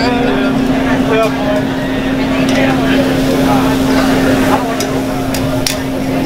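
Busy restaurant ambience: many overlapping voices over a steady low hum, with a few sharp clinks.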